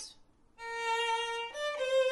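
Solo violin, bowed, playing a short demonstration phrase. After a brief pause it holds one note for about a second, steps up to a short higher note, then settles on a note between the two.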